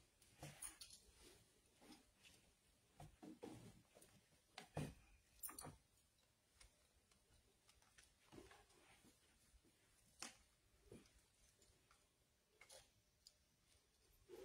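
Near silence: quiet room tone broken by faint, irregular clicks and soft knocks.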